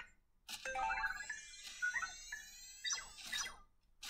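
Anki Vector robot's small speaker playing its Happy New Year animation: electronic musical chirps over a run of rising whistles, like fireworks taking off. It starts about half a second in and stops just before the end.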